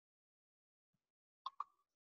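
Near silence broken by two short clicks in quick succession about one and a half seconds in.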